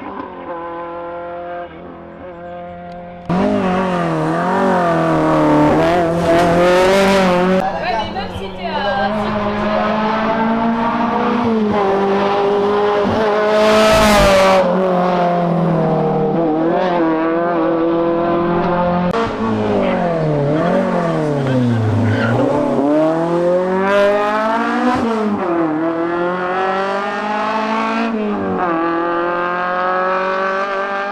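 Rally car engine revving hard at full throttle, its pitch climbing through each gear and dropping sharply at the shifts and lifts, over several passes. The engine gets suddenly much louder about three seconds in.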